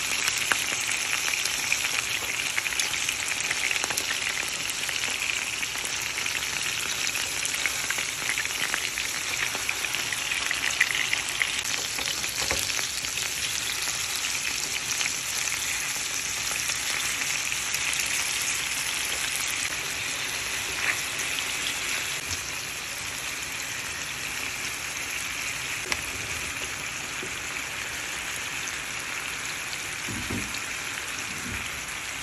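Chicken breast pieces sizzling steadily in hot oil in a frying pan, with a few light clicks of metal tongs turning them. The sizzle eases a little about two-thirds of the way through.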